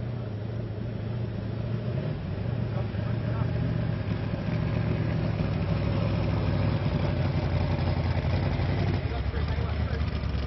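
Jet sprint boat's engine running hard through the course, a steady low drone that grows louder as the boat draws near.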